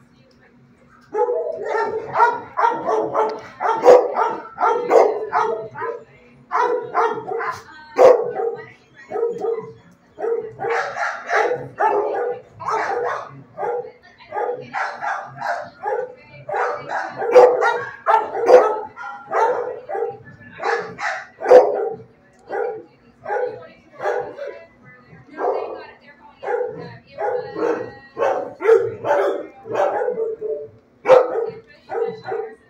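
Shelter dogs barking over and over, loud, with many short barks coming in quick runs and brief pauses between them, starting about a second in.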